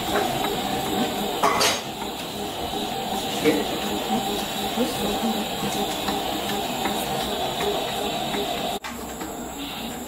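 Stand mixer's motor running at low speed, its dough hook kneading a stiff one-kilo batch of brioche dough before the butter is added: a steady hum with a constant tone. It drops out for a moment near the end.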